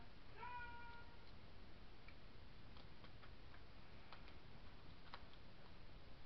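One short, meow-like pitched call about half a second in, with evenly spaced overtones and a slight fall in pitch at its start. After it come a few faint ticks and clicks of paper being handled.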